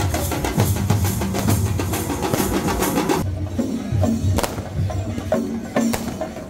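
Street drum troupe beating large drums with sticks in a fast, dense rhythm. About three seconds in, the playing thins to sparser, separate strikes.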